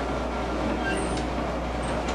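Steady hum and hiss of a live band's stage amplifiers and room between songs, with no instrument playing yet.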